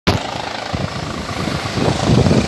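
Helicopter running: a steady rushing noise with uneven low thudding.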